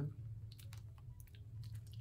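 A person chewing a crisp snack, heard as a few faint crunching clicks over a low steady hum.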